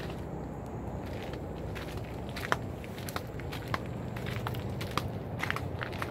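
Footsteps crunching over dry leaf litter and twigs, with irregular sharp snaps and crackles over a steady low rumble.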